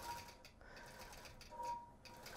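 Long arm quilting machine stitching, faint and steady, with a brief louder hum about one and a half seconds in.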